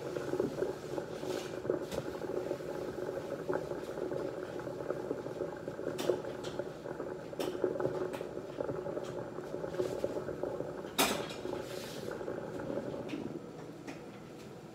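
Dish-soap foam in a stainless steel sink fizzing and crackling as its bubbles pop and the suds settle, with a few sharp clicks, the loudest about eleven seconds in.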